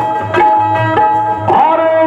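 Dholak drum playing a steady beat under a harmonium holding a repeated reed note, as the instrumental break of a Marathi folk song. A man's singing voice comes in on the microphone about one and a half seconds in.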